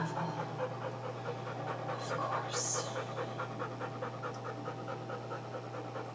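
A dog panting steadily, with a brief hiss about two and a half seconds in.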